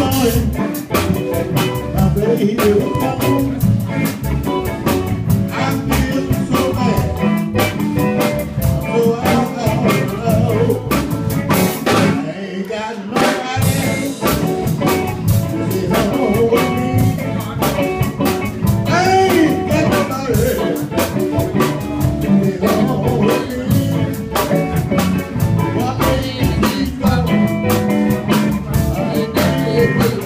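Live blues band playing: drum kit, electric guitar and bass, with a singer's voice over the top. The band briefly drops out for about a second, about twelve seconds in.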